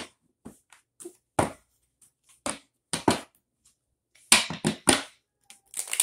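Tarot cards being handled and laid down: a string of short, sharp card slaps and flicks at uneven intervals, the loudest few coming together a little past four seconds in.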